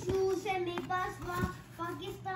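Background song: a child-like voice singing a gentle melody in short phrases.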